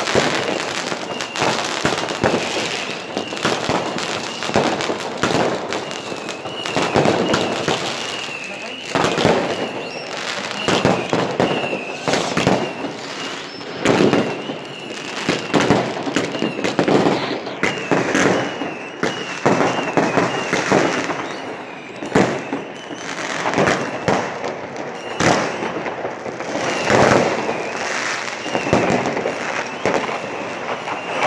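New Year's Eve fireworks and firecrackers going off in dense, irregular volleys of bangs and crackles, with a wavering high-pitched tone underneath through most of it.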